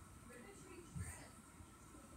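Quiet room tone with faint, distant voices and a soft bump about a second in.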